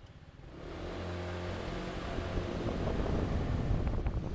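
A motor vehicle's engine accelerating. It comes in about half a second in and grows steadily louder.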